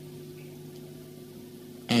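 A pause in a man's speech, filled by a faint, steady low hum; his voice returns right at the end.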